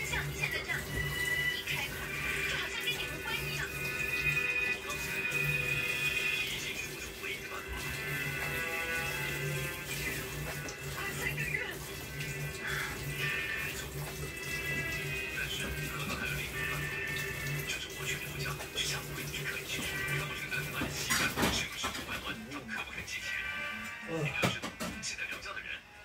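A television playing music and voices over a kitchen tap running into a stainless-steel sink as dishes are washed. A sharp clatter comes near the end.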